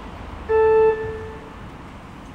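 A single short organ note, held for about half a second and then fading out in the church's reverberation.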